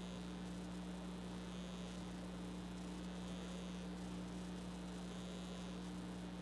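Room tone of a large chamber held in silence: a steady electrical hum with faint hiss, and a faint higher hiss that swells about every two seconds.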